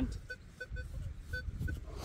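Metal detector giving a series of short, same-pitched beeps at uneven intervals as its coil is swept over a buried target, against low wind rumble on the microphone.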